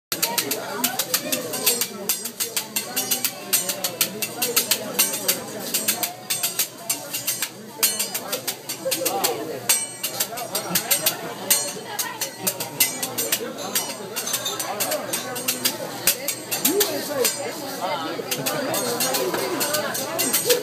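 Metal spatula and fork clicking and clacking against a steel teppanyaki griddle in quick, irregular strikes, over steady restaurant chatter.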